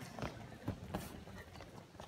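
A few soft thuds of wrestling shoes stepping on a wrestling mat. The feet stab in and back out of stance in a shooting drill.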